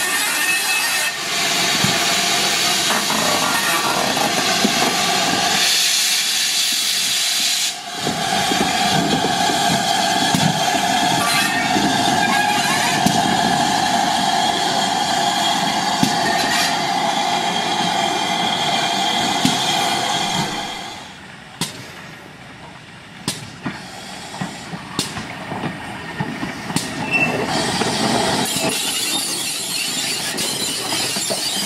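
GWR 4300 class 2-6-0 steam locomotive No. 5322 hissing steam from its open cylinder drain cocks as it moves off. About eight seconds in, a long steady whistle sounds for about thirteen seconds. After that come quieter sharp clanks and clicks, growing louder near the end as the engine comes closer.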